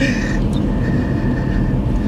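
Car cabin noise while driving: a steady low rumble of engine and tyres on the road heard from inside the car, with a faint thin high tone that fades out near the end.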